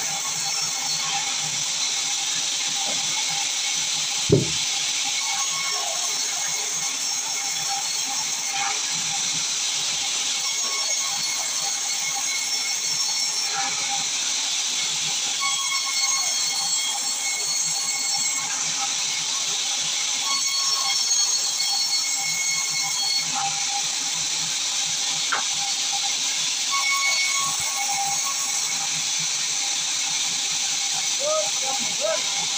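Sawmill vertical band saw resawing a large pine timber: the blade cutting through the wood makes a steady, high hissing whine throughout. One sharp low thud comes about four seconds in.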